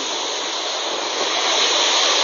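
Typhoon-force wind and driving rain: a steady, loud rushing hiss with no break.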